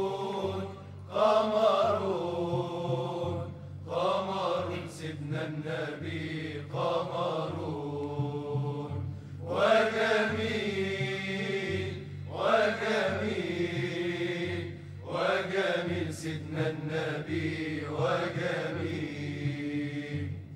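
Arabic devotional inshad sung in long, ornamented phrases a couple of seconds each, with short breaks between them, over a steady low drone.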